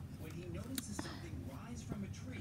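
Faint whispered muttering from a woman, with a few light clicks of handling: two about a second in and one near the end.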